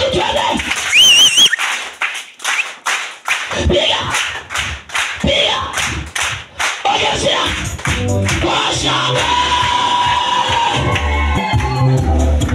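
Lively church gospel music with a congregation clapping in rhythm, about three claps a second, through the first half. A brief, loud, high wavering cry comes about a second in, and from about 8 s on music with a heavy bass beat takes over.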